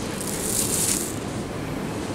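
Hypermarket background noise, a steady wash of store sound, with a brief high hiss about half a second in.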